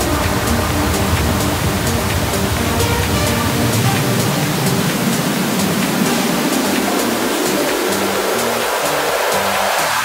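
Melodic techno in a build-up: the bass drops out about halfway, and a swell of filtered white noise rises steadily in pitch toward the end.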